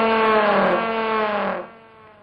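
A loud, brass-like horn note from the film's soundtrack, used as a comic sound effect. It is held steady with a slight wobble in pitch, then cuts off about one and a half seconds in, leaving a short fading echo.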